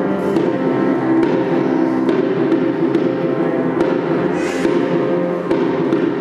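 Instrumental passage of piano and cello, with a few separate low drum strokes from a prehispanic percussion instrument; no singing.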